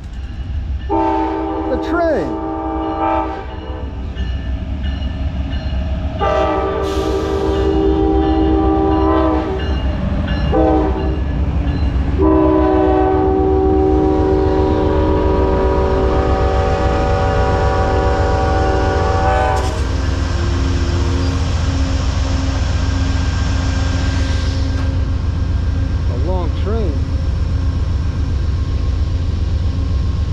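Amtrak diesel locomotive horn sounding the grade-crossing signal: two long blasts, a short one, then a long final blast. Under it the locomotives' diesel engines and the train give a heavy low rumble as it arrives, and the rumble carries on steadily after the horn stops.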